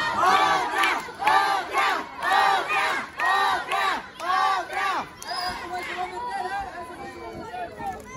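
Crowd chanting in unison, about two rising-and-falling shouts a second, loud for the first five seconds before trailing off into scattered voices.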